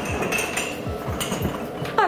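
Glass Christmas-tree balls clinking against each other as a gloved hand shakes a bunch of them over a basin during silvering, which turns them from clear to mirrored. Background music with a beat runs underneath.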